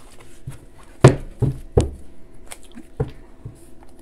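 Oracle cards and a card deck being handled and set down on a tabletop: three sharp taps between one and two seconds in, the first the loudest, then a softer one about three seconds in.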